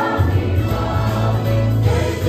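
A mixed church choir of women and men singing a hymn together over a held low bass note that changes pitch twice.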